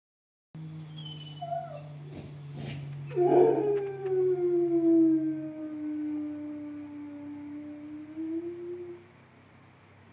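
Miniature Pinscher howling: a few short whines, then about three seconds in one long howl that slides down in pitch and is held for about six seconds before it fades out.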